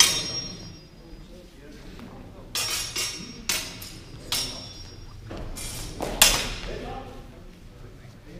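Steel fencing swords clashing blade on blade with a metallic ring. There is one loud clash at the start, a quick run of four clashes two to four and a half seconds in, and two more around six seconds, the second of which is the loudest.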